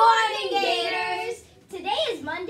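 Three children singing together in unison, holding long drawn-out notes that stop about a second and a half in; a child's voice then starts speaking near the end.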